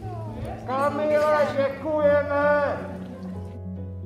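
Two long, high-pitched calls from voices, carried over steady background music. The music goes on alone from about three seconds in.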